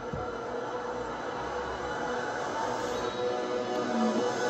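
Film trailer soundtrack: a TIE fighter's engine roar building as it closes in, over orchestral music, growing gradually louder.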